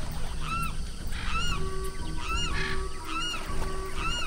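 Short rising-and-falling bird-like calls, about two a second, over a few held musical notes.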